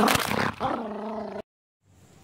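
Boxer dog giving a drawn-out play growl, with a noisy scuffle just as it starts and a second held growl after it. The sound cuts off suddenly about a second and a half in, leaving only faint background.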